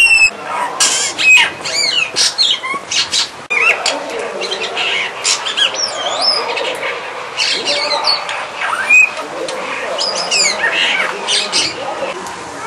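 Brahminy starling singing: a rambling, varied stream of whistled notes that glide up and down, broken by sharp clicks and harsher chattering notes.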